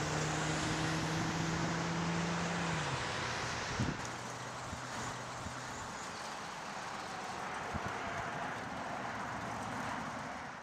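Passing road traffic: a vehicle's engine hum drops in pitch about three seconds in as it goes by, over a steady hiss of tyre and road noise.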